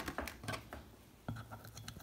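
Small stainless steel whisk clicking and scraping against a stainless steel bowl in a few faint, irregular taps as it begins stirring the chilled, half-set shea butter balm.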